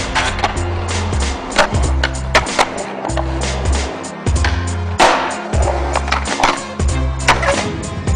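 Skateboard on concrete: wheels rolling, with sharp clacks of the board on tricks and landings, the loudest about five seconds in. A music track with a heavy, pulsing bass line plays under it.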